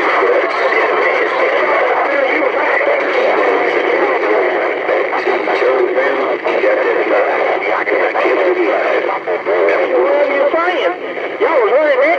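Voices over a CB radio, squeezed into the narrow, hissy band of the radio's speaker. Several stations are transmitting at once and double over each other, so the speech comes out as an unintelligible garble.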